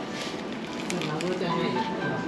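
Close-up chewing of a crisp nori-wrapped hand roll: a run of small crunchy clicks in the first second, then a brief hummed voice, over soft background music.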